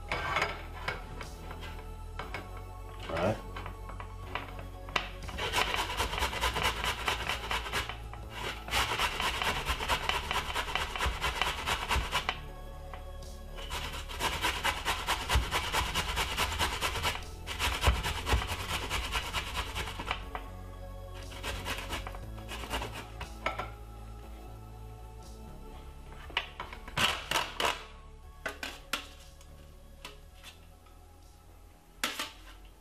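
Peeled fresh ginger being grated on the fine side of a stainless steel box grater: runs of quick rasping strokes, broken by short pauses.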